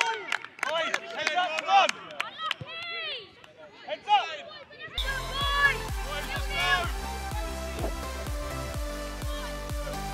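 Young footballers' voices shouting and calling out on the pitch, with a few sharp knocks. About halfway through, background music with a steady beat and heavy bass starts suddenly and carries on.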